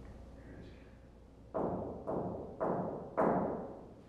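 Four hand knocks on a hard surface in quick succession, about half a second apart, each ringing out briefly.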